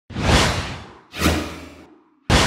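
Two whoosh sound effects in a title sequence, one right at the start and one about a second in. Each swells quickly and fades away, with a deep rumble beneath.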